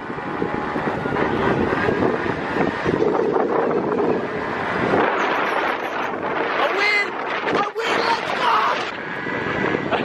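Wind rushing over the microphone of a camera carried at speed, a loud, dense noise, with a few brief shouted voice sounds in the middle.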